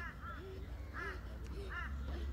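Faint, short arched bird calls, a few a second and irregularly spaced, over a low rumble of wind on the microphone.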